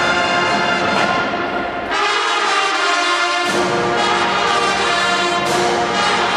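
Marching band playing, its brass section holding loud, sustained chords. About two seconds in, the low brass drops out for a second or so, and then the full band comes back in.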